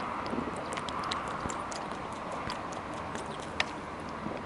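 A person drinking tap water from a bottle, with small clicks and swallowing sounds over a steady faint hiss, and one sharper click near the end.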